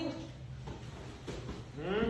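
A woman breathing heavily and noisily, with soft rustling of clothing, ending in a rising voiced breath just before she speaks again.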